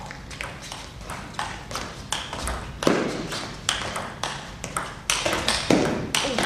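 Table tennis rally: the ball clicks sharply off the rackets and table in quick alternation, about three hits a second. There are a couple of heavier, louder impacts, one about halfway through and one near the end.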